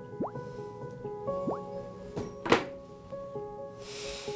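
Soft background music with two short upward-sweeping 'bloop' pop sound effects, the kind used for chat messages popping up on screen, one just after the start and one about a second and a half in. A single sharp thunk about two and a half seconds in is the loudest sound, and a short hiss comes just before the end.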